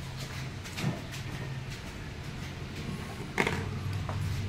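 Light knocks and rubbing as a steel suspension arm with a bolted-on ball joint is handled and turned over a wooden workbench, over a steady low hum.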